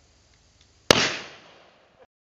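A single gunshot volley from raised long guns, one sharp report about a second in, with a tail that dies away over the next second.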